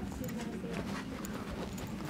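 Store background sound: faint distant voices, scattered footsteps and taps on a hard floor, over a steady low hum.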